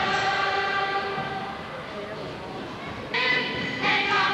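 A choir holding a long sustained chord that slowly fades, then a louder chord comes in about three seconds in.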